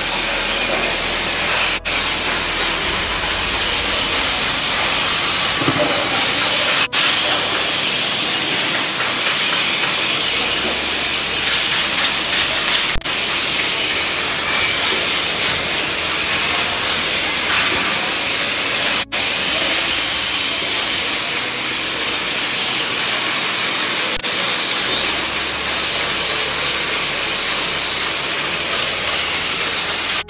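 Steady, loud hissing noise of metalworking, from arc welding and grinding on steel frames. It is cut by brief dropouts every five or six seconds.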